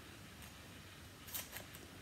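Faint rustling of a small paper fin being handled and folded, with a few short rustles, most of them around the middle.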